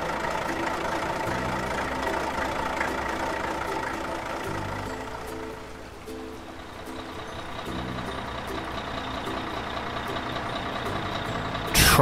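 Cartoon vehicle engine sound effect: a tractor's engine running that dies away about halfway through, then a truck's engine coming in, over light background music.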